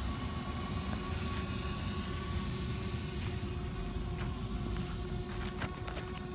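DJI Spark drone hovering in the air, its propellers giving a steady hum at an unchanging pitch, over a low rumble of wind on the microphone.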